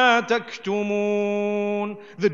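A man reciting a Quranic verse in Arabic as a melodic chant. The pitch moves at first, then he holds one long steady note through most of the second half before stopping.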